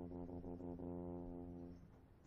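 Drum corps low brass holding one long, low sustained note that stops shortly before the end.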